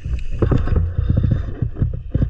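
Muffled underwater sound from a camera held underwater: a low rumble of moving water with irregular clicks and knocks.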